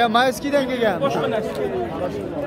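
Several people talking over one another in a crowd, with a busy babble of men's voices.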